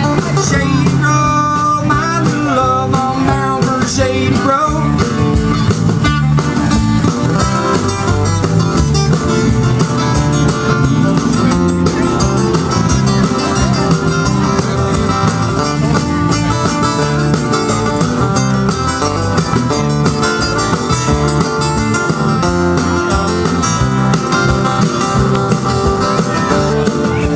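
Live band playing a folk tune between sung verses: acoustic guitars, bass guitar and drum kit, amplified through PA speakers.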